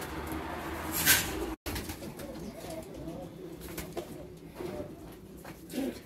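Domestic pigeons cooing in a loft, low warbling calls going on throughout. A brief, loud, noisy burst comes about a second in, and the sound cuts out for an instant just after it.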